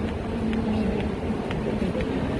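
Footsteps on a stone-tiled station platform, about two light clicks a second, over a steady low hum of the station's machinery and traffic.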